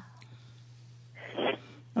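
A person's audible breath, a short breathy intake or sigh about a second in, over a low steady hum in the recording.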